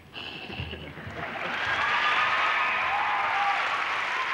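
Audience applauding, swelling about a second in and then holding steady and loud.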